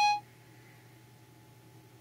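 The tail of the iPhone 4S Siri chime, a short bright tone that stops a fraction of a second in and signals that Siri has stopped listening. Then a quiet room with only a faint, steady low hum while Siri handles the command.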